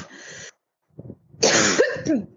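A person coughing: a small cough about a second in, then a louder, harsh cough about a second and a half in.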